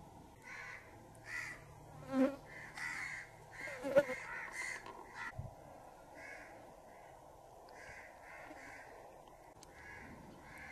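A bird calling over and over in short, harsh, crow-like notes, in several quick runs, over faint steady background noise. There is a sharp click about four seconds in.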